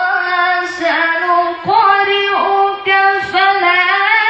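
A boy's high voice reciting the Quran in the melodic tajweed style, holding long ornamented notes with several short breaks for breath.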